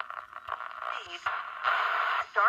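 Small solid-state transistor radio's tinny speaker being tuned by hand: static hiss with brief fragments of a talk-radio voice, the hiss loudest near the end as the station comes in.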